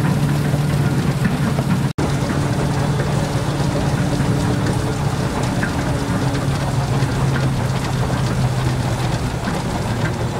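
Steam traction engine driving a threshing machine by a flat belt: a steady mechanical drone with a low hum that sags slightly in pitch later on. The sound cuts out for an instant about two seconds in.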